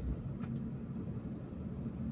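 Road and engine noise inside a moving car: a steady low rumble. There is a single brief click about half a second in.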